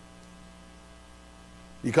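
Steady electrical mains hum, a low, even buzz with a row of overtones, holding level throughout.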